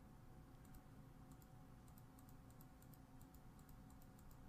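Faint, irregular clicking of computer keys, several clicks a second, over a low steady hum; otherwise near silence.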